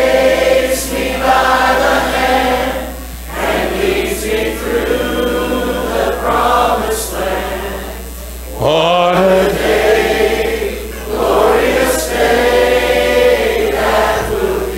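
Congregation singing a slow gospel hymn in unison, led by a man singing into a microphone, in phrases with short breaths between them.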